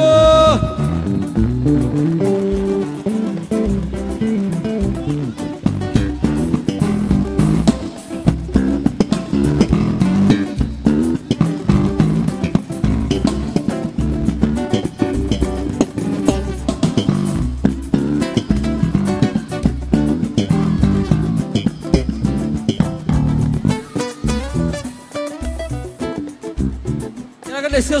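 Live electric bass guitar solo: a busy run of low plucked notes with drums behind it, the bassist's feature spot as the band is introduced.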